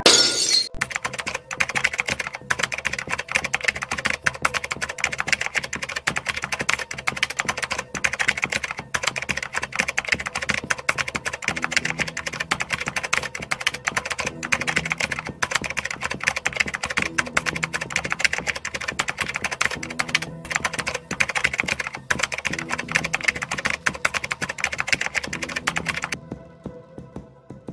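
A typing sound effect: rapid, unbroken keystroke clicks, opening with a brief sharp noise.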